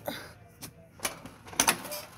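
A screen door being pushed open, with several knocks and rattles of its metal frame, the loudest clatter about a second and a half in.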